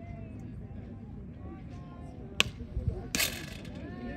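One sharp crack of a softball pitch at home plate about two and a half seconds in, followed a moment later by a short burst of hiss, over faint spectator voices.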